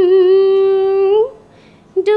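A woman's solo voice singing one long held note with a light waver, which bends upward and stops about a second and a half in. A new note starts right at the end.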